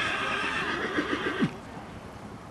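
A horse neighing in one long call that ends about a second and a half in with a sharp drop in pitch.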